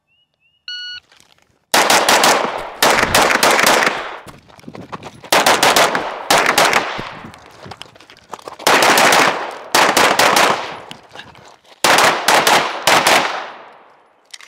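A shot timer beeps once, then rapid gunfire follows in four strings, each a handful of quick shots with a trailing echo.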